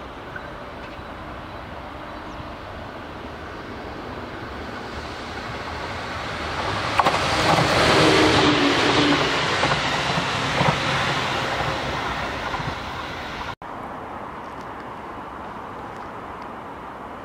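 JR 211 series electric train passing close by: the rolling noise builds, is loudest about eight seconds in with a couple of sharp clicks from the wheels, then fades away. The sound drops out for an instant near the end.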